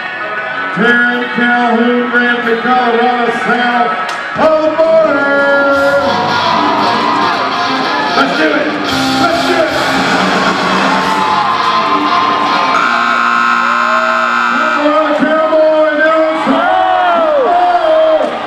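Loud music with singing, heard through the reverberation of a large indoor arena.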